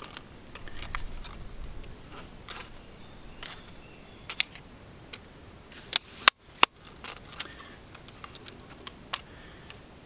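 Scattered light clicks and knocks from a Benro Slim carbon fiber travel tripod being handled as its legs are spread, with the sharpest pair of clicks a little past the middle.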